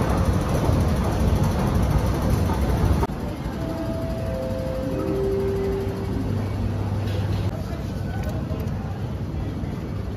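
Station ambience with a low rumble that drops away suddenly about three seconds in. Soon after comes a three-note chime falling in pitch, then a low hum.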